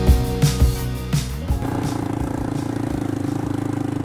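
Background music with a drum beat for about the first second and a half, then a cut to a small ATV engine idling steadily with a fast, even pulse.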